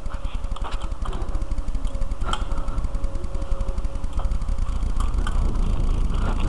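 Riding noise picked up by a helmet camera's microphone on a Kona mountain bike ride: a steady low rumble with scattered clicks and knocks as the bike rolls over the ground. A faint steady whine runs through the first four seconds or so.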